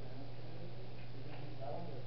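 A steady low hum, with faint speech and a few light ticks over it.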